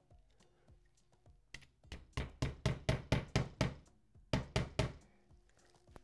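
Hammer striking a nail to fix a wooden name board to the wall. There is a quick run of about ten sharp knocks, roughly four or five a second, then a short pause and four more.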